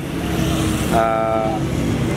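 Road traffic running steadily, with a vehicle horn sounding once, a single flat tone lasting about half a second, about a second in.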